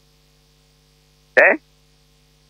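Faint steady electrical mains hum in the recording, a low tone with a few higher overtones, broken once near the end by a short spoken "Eh?".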